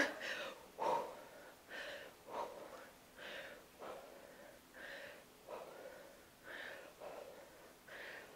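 A woman breathing hard and rhythmically with the effort of double crunches, a soft puff of breath about once a second.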